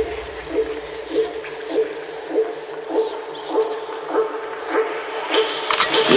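Breakdown in a G-house track: the bass and kick drop out, and a single plucked synth note repeats about every 0.6 seconds. Near the end a quick drum roll leads back into the beat.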